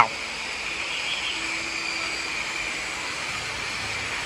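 Steady rushing, hissing noise of air bubbling up through the air-lift sponge filters in the fish tanks, with a faint brief hum in the middle.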